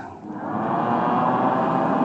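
A congregation's many voices singing or chanting together in a long, wavering held note, swelling in about half a second in.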